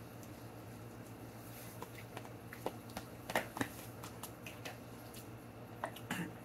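Faint clicks and scrapes of a plastic fork against a plastic takeout bowl while eating, with a few sharper clicks about three and a half seconds in, over a low steady hum.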